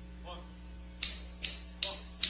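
Three sharp clicks, evenly spaced a little under half a second apart, beginning about a second in, over a faint low hum.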